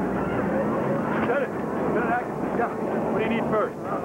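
Indistinct, overlapping voices over a steady, noisy background rumble, with no single clear speaker.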